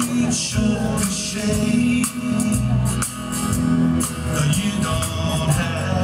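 Live band playing a song: a man singing over strummed acoustic guitar, electric guitar and a steady beat with cymbal or tambourine hits.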